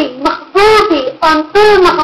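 A woman singing in a high voice: about four short notes, each arching up and down in pitch.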